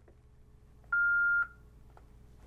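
Yaesu FTM-500D mobile transceiver giving one steady high beep, about half a second long, about a second in. It confirms a long press on the function key that enters the call sign. Faint clicks of the radio's buttons come before and after the beep.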